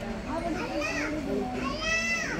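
High-pitched voices of children calling and chattering, with two drawn-out calls rising and falling in pitch around one second in and near the end.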